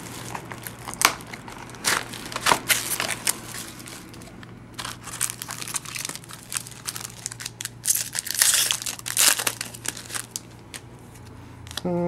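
Plastic shrink wrap and foil trading-card packs crinkling and rustling as a hobby box is unwrapped and its packs are handled: a run of short crackles, with a longer, denser rustle about eight seconds in.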